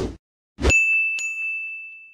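Subscribe-animation sound effects: a short thud, then a bell ding about half a second in, struck again about half a second later and ringing out as it fades.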